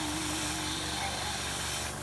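Gravity-feed airbrush spraying thinned metallic paint: a steady hiss of air that cuts off suddenly near the end.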